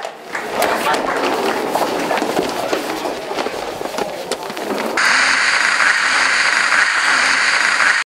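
Crowd voices and scuffling as the best man is led out. About five seconds in, this cuts suddenly to a loud, steady hiss of TV static.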